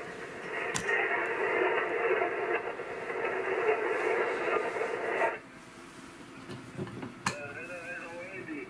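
HF amateur transceiver on 40-metre single sideband giving out a steady hiss of band noise, confined to the narrow voice passband, which cuts off abruptly about five seconds in. A click comes about a second in and another near the end, followed by a faint voice from the radio.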